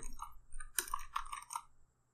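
Computer keyboard keys clicking as a few keystrokes are typed, stopping a little before the end.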